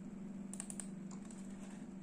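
Faint computer mouse clicks: a quick cluster of clicks about half a second in, then a couple of single clicks, over a steady low hum.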